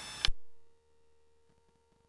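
A short steady hiss cut off by a sharp click about a quarter second in, as the recording's microphone audio drops out. After it, near silence with only a faint steady tone.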